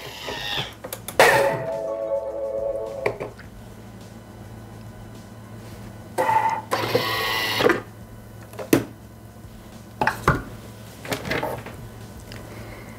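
Bimby (Thermomix) TM6 running at speed 10, blending lemonade, heard in two short stretches of a few seconds each. After these come a few sharp clicks and knocks.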